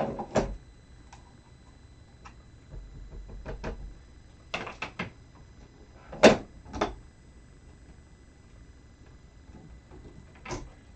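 Plastic ink pad cases and craft tools handled and set down on a work mat: scattered knocks and clicks, the sharpest about six seconds in.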